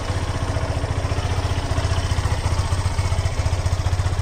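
Yamaha FZ-S FI V2.0's 149 cc single-cylinder four-stroke engine idling steadily, with an even stream of firing pulses.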